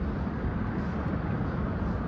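2009 NABI 40-LFW hybrid transit bus pulling away close by, its engine and drivetrain giving a steady low rumble.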